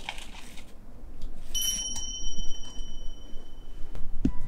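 Faint scratchy rustling of shaving bedding as a chipmunk moves in its burrow, then about a second and a half in a high, bell-like ding that rings on and fades away over about two seconds.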